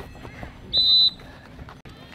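A referee's whistle, blown once in a short, sharp blast of about a third of a second, about a second in, signalling the ball out of play for a throw-in.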